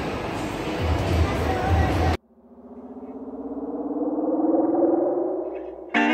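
Busy amusement-park ambience with low thuds, cut off suddenly about two seconds in by edited-in background music: a synthesizer tone that swells, glides slowly upward in pitch, and fades near the end.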